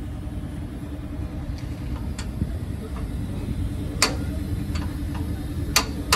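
Workshop sounds at a car's front suspension: a steady low mechanical hum with a few sharp clicks of hand tools, the loudest about four seconds in and near the end.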